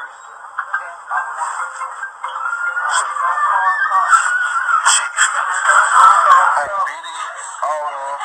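Tinny, narrow-sounding audio from a phone recording: several people's voices talking over each other, with music under them, getting louder through the middle.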